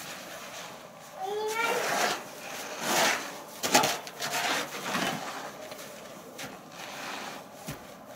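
Small plastic snow shovels scraping and pushing snow in a few short strokes, mixed with a child's voice.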